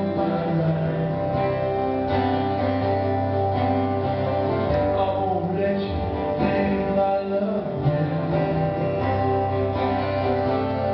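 Live acoustic guitar strummed steadily while a man sings lead into a microphone.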